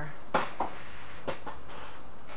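Handling knocks from unpacking on a wooden table: one sharp knock about a third of a second in, then a couple of softer taps.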